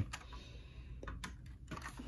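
Faint clicks and taps of hands handling a 1:24 scale Range Rover model car as it is picked up off a tabletop, with a small cluster of clicks about a second in.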